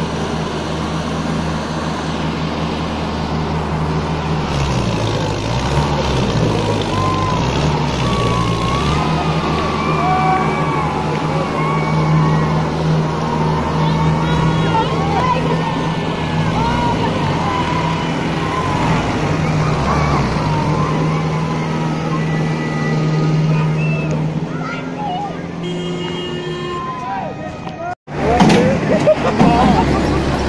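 Diesel tractor engines running as the tractors manoeuvre, their pitch shifting between about four and nine seconds in, then holding steady. Onlookers' voices call out over the engines, and the sound cuts out for an instant near the end.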